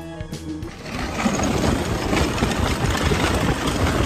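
Background music for the first half second, then a vehicle engine running as it rides over snow, with wind buffeting the microphone, loud and rough without letting up.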